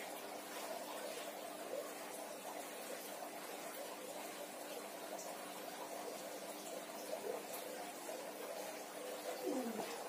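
Low, steady cooing of a dove, going on throughout.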